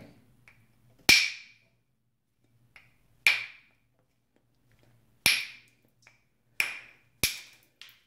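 Copper-headed billet (copper bopper) striking the edge of a Flint Ridge flint preform in percussion flaking: five sharp clicking strikes with a brief ring, spaced a second or two apart, the last two close together. The blows are knocking flakes off to remove a crystal pocket from the stone.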